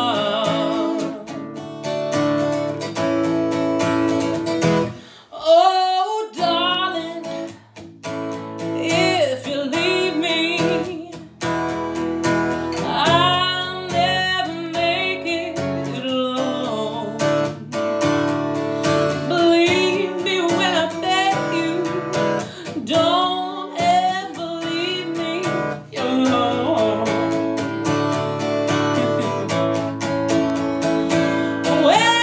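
A woman sings with vibrato over a steadily strummed acoustic guitar. About five seconds in, her voice slides up to a loud high note.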